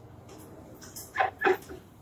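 A woman's stifled laughter behind her hand: two short, squeaky giggles a little over a second in, after a faint low murmur.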